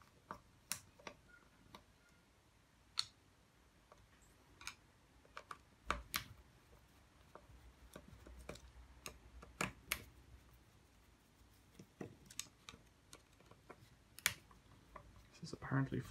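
Faint scattered clicks and taps of hard plastic parts and small screws being handled as an electric shower's plastic housing is unscrewed and taken apart, with a low rumble setting in about six seconds in.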